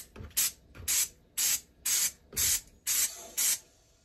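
Aerosol can of Maxima air filter cleaner spraying a dirt bike air filter in short bursts: about seven quick sprays, roughly two a second.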